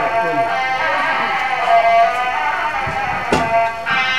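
Music with a sustained, pitched melody line, typical of devotional music at a temple puja, with a single sharp knock a little past three seconds in.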